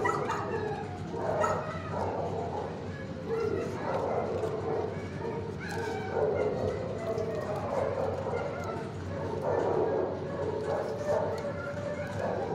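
Dogs barking in a shelter kennel block, with calls coming irregularly every second or two.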